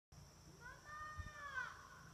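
A young child's faint, drawn-out high-pitched vocal sound lasting about a second, dipping in pitch at the end.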